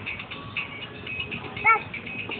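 Thin, high electronic tune playing from a toddler's musical push toy. A short, high squeal near the end is the loudest sound.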